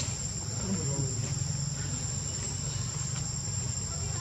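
Steady, high-pitched insect chorus, with a low steady rumble beneath it.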